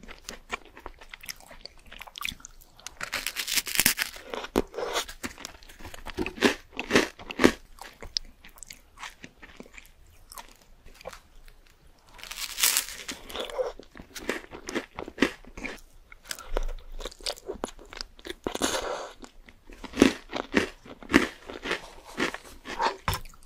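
Close-miked eating: a slice of bread dipped in tomato-and-egg sauce with stretchy cheese being bitten and chewed, with wet, sticky mouth sounds and crunches. Louder bites come about three seconds in, again around the middle, and again near the end.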